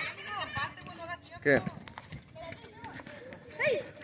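Boys' voices raised in argument at a distance, in short bursts about a second and a half in and again near the end. Scattered footsteps and scuffs on a concrete court run beneath them.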